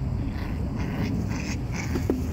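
Black German Shepherd puppy and chihuahua puppy playing tug of war, with short dog sounds coming several times a second over a steady low rumble.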